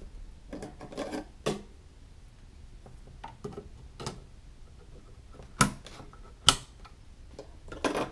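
Sharp plastic clicks as DDR3 memory sticks are pushed into a motherboard's DIMM slots and the slot retention tabs snap shut, with light handling noise between. The two loudest clicks come about a second apart in the second half.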